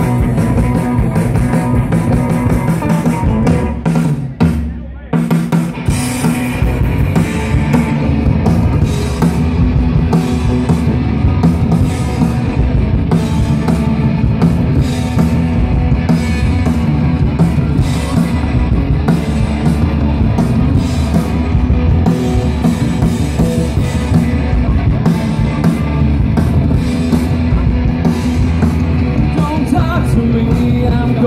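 Live rock band playing through a PA: drum kit, electric guitars and bass guitar. The band drops out briefly about four to five seconds in, then comes back in.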